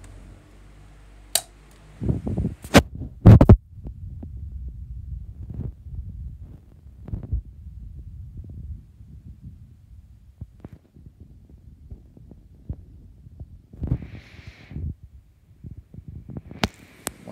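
Plastic push-button switches on a 16-inch pedestal fan clicking sharply a few times, setting it to medium speed with oscillation. Then the airflow of two oscillating pedestal fans buffets the microphone in a low, uneven rumble.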